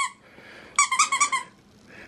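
A squeaky plush dog toy giving quick runs of rapid high squeaks. The end of one run falls right at the start, and a second run of about half a second comes about a second in.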